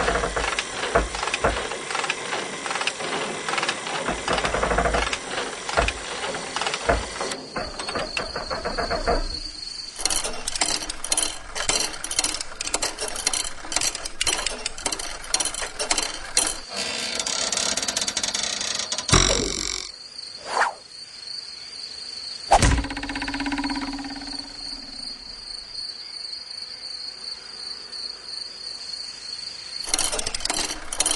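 Cartoon insect sound effects: fast rasping chirps over a steady high whistle, then two sharp sudden sounds about two-thirds of the way through, followed by a brief low hum.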